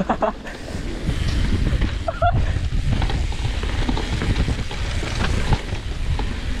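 Mountain bike descending a bumpy dirt trail at speed: wind buffeting the camera microphone over a continuous rumble of tyres and rattling of the bike over the rough ground.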